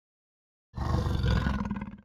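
A big cat roaring: a low, rough growl that starts after silence about three-quarters of a second in and trails off near the end.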